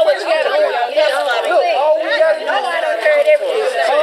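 Several people talking loudly over one another, a jumble of overlapping voices with no single clear speaker.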